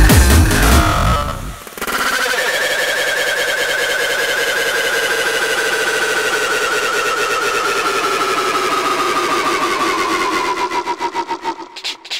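Hardstyle track: the pounding kick drum stops about a second and a half in, giving way to a breakdown of a sustained, rapidly pulsing synth lead whose pitch slowly falls. Near the end the synth is chopped into quick stutters.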